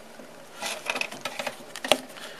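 Handling noise: irregular light clicks and rustles start about half a second in, with one sharper click near the end.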